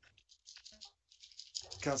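A run of faint, quick clicks and rattles for about a second and a half, then a man begins to speak near the end.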